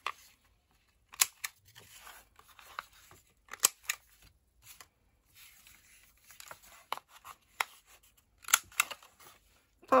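Hand-held corner rounder punch (X-Cut) snapping shut as it clips paper corners: about half a dozen sharp clicks at irregular intervals, with soft paper rustling between them.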